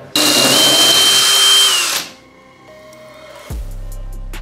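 Cordless drill running in one loud burst of about two seconds, boring into the wall: a high whine that steps up early and falls away as the drill stops. Background music with a steady beat comes in near the end.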